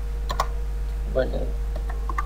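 A few scattered computer keyboard keystrokes over a steady electrical hum, with a brief vocal sound about a second in.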